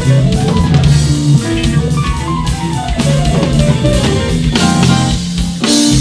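Jazz-funk band music with drum kit and keyboard melody, and an electric bass played along with it, holding a steady bass line. A cymbal crash comes just before the end.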